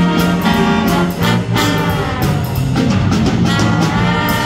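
Junior high school jazz big band playing a blues in full ensemble: saxophones, trumpets and trombones together over drum kit, piano and guitar.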